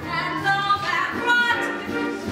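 Stage musical cast singing a number with accompaniment, a woman's voice to the fore.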